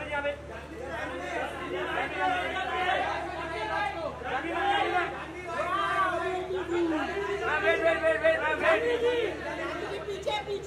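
Several voices calling out and talking over one another, the way photographers call to someone posing for them, in a large hall.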